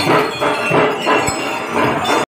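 A hanging cluster of dozens of small brass temple bells on chains, grabbed and shaken by hand, jangling and clinking together in a dense ringing clatter that swells and eases unevenly.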